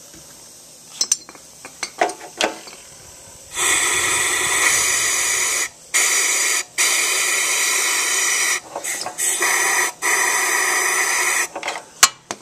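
Compressed-air blow gun hissing loudly into a flathead lawnmower engine's carburetor, starting about a third of the way in and running in several long blasts with short breaks, stopping just before the end. The air pressurizes the intake as a leak check for a bent intake valve, with Windex on the valve to show any bubbles.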